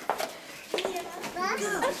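Young children's voices, babbling and calling out, with a couple of light clicks.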